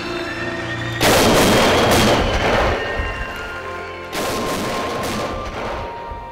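Two long bursts of gunfire, the first about a second in and lasting some two seconds, the second about four seconds in and shorter, over music with sustained notes.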